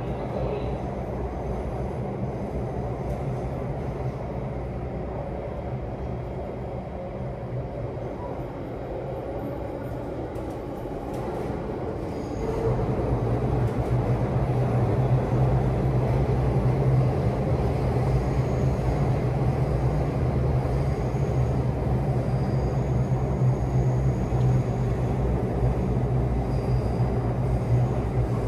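Running noise of a Singapore MRT Circle Line train heard from inside the carriage: a steady low rumble. About twelve seconds in it gets louder, with a stronger low hum.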